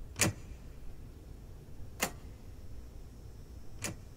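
Three sharp, single clicks or knocks, evenly spaced almost two seconds apart, over a low steady hum.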